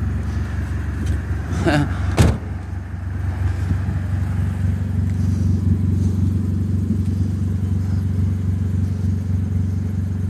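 Car engine idling steadily, heard from inside the car, a low even hum. About two seconds in, a brief wavering noise is followed by a single sharp click, the loudest sound.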